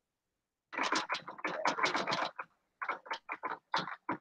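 Typing on a computer keyboard: a fast run of keystrokes about a second in, then separate keystrokes at a steadier pace near the end, as a search term is erased and a new one typed.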